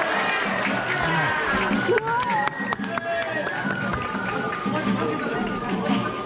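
Japanese festival music with a flute playing long held notes, over the chatter and calls of a crowd.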